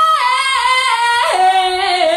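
A woman singing into a microphone, holding a high note and then stepping down through a descending run of notes.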